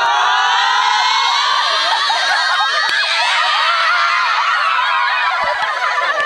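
A women's football team screaming and cheering together in celebration of a cup win. Many high voices rise in pitch at once right at the start and keep going as one loud, sustained shout.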